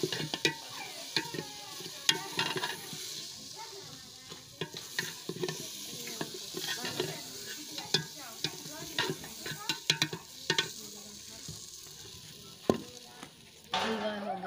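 A metal spoon stirring thick halwa in a metal pot, scraping and clinking against the pot in irregular sharp knocks, over a steady sizzle from the cooking halwa.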